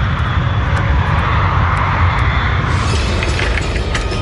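Jet airliner engines running as a steady, loud rumble in flight. Music begins to come in near the end.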